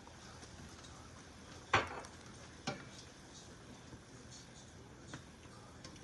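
Pan of stew simmering on the stove with a faint steady sizzle, and a sharp knock of a utensil against the stainless steel pan about two seconds in, followed by a smaller one a second later.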